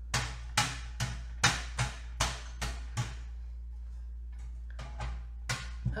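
Felt-pad alcohol-ink applicator dabbed against a metal tree cutout: a run of sharp taps, about two to three a second, for the first three seconds, then a pause and lighter taps near the end. A steady low hum runs underneath.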